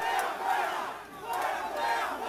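A large street crowd shouting together, in two swells a little under a second apart.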